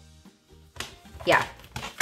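A faux-leather A5 cash binder being picked up and opened, with a short click about a second in as its snap closure comes undone, and a brief spoken "yeah".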